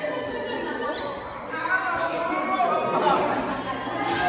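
Indistinct chatter of several people talking at once in a large indoor room.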